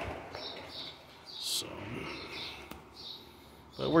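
Faint bird chirps in the background: a scatter of short, high calls over low room noise.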